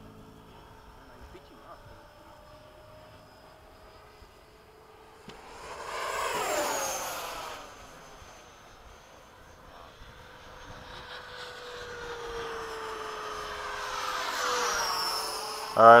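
Electric ducted-fan RC model jets whining as they fly by: one passes about six seconds in, its pitch dropping as it goes, and another grows louder from about ten seconds and sweeps past near the end with a falling whine.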